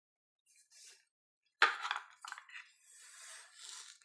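Parts of a SIG MCX Spear LT carbine being handled: a sharp click about a second and a half in, a lighter knock just after, then soft scraping and rustling.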